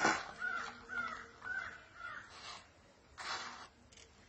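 Crow cawing, a quick series of short calls in the first two seconds, followed by a brief scraping noise about three seconds in.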